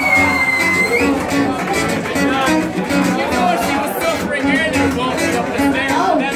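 Live acoustic guitar music in a steady strummed rhythm, with crowd voices over it. A high held tone sounds for about a second at the start.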